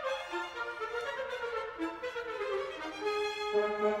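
Orchestral concert music: a solo trumpet with string orchestra, playing a melodic line that steps downward, with a lower held note coming in near the end.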